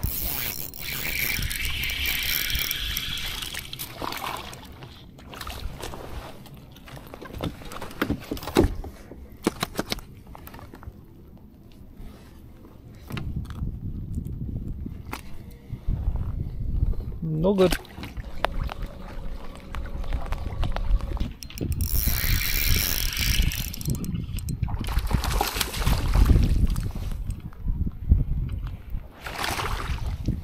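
Clicks and rattles of fishing tackle and line being handled aboard a kayak, most frequent in the first half. Gusts of wind on the microphone come near the start and again a few seconds before the end.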